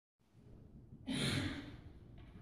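A person's short sigh, about half a second long, about a second in, over faint room noise.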